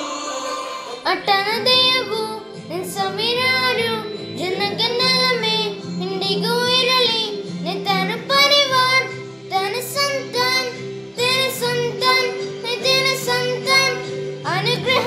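A song with instrumental backing, a high voice singing the melody in phrases of wavering, held notes.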